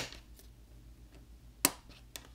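Two sharp snaps, one right at the start and another about a second and a half in: a plastic pry tool popping the Google Pixel 5's camera flex-cable connectors off the main board.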